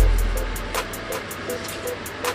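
Background music: a deep bass note hits at the start and fades, under quick even ticks and a short repeating melody.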